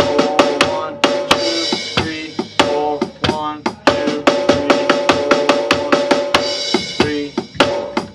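Electronic drum kit played through its sound module: a steady rock beat, then snare and tom fills with rapid alternating strokes, over a backing track with sustained chords.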